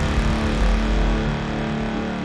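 Opening of a tech house remix: a dense noisy wash slowly fading over held low synth notes.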